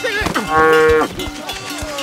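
Eringer (Hérens) cow mooing loudly as it charges. The loudest call comes about half a second in, then a lower moo is held steady to the end.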